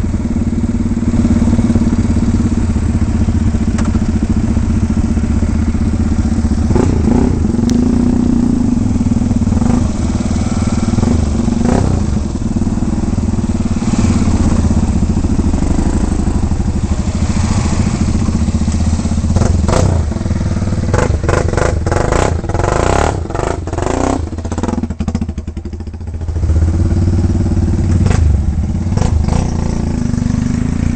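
Motorcycle engine running steadily at low revs close up, the bike creeping along a rough dirt trail. About two-thirds of the way through there is a run of knocks and rattles, and then the engine sound briefly drops off before picking up again.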